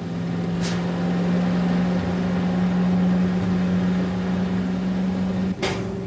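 Truck-mounted crane's engine running at a steady, unchanging pitch while it powers the hoist, cutting off shortly before the end.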